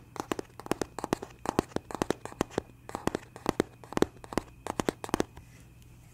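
Fingernails tapping and scratching on the cardboard retail box of a Zoom H1n recorder held close to the microphone. It is an irregular run of crisp taps, several a second, that stops about five seconds in.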